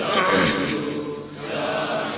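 Islamic dhikr chanting: a man's voice intoning a drawn-out invocation that fades and picks up again near the end.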